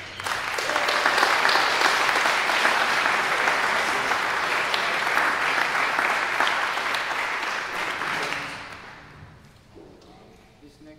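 Audience clapping at the end of a jazz tune, starting just as the music stops, holding steady, then dying away about eight or nine seconds in.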